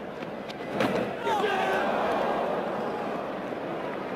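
Cricket ground crowd noise from a TV broadcast: a single sharp knock about a second in, then the crowd's mingled voices and shouts swell and hold.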